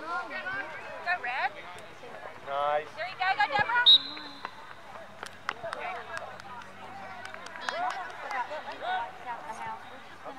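Shouting voices on an open soccer field, with players and sideline spectators calling out in bursts; the loudest calls come about three to four seconds in. A few short, sharp knocks sound in between.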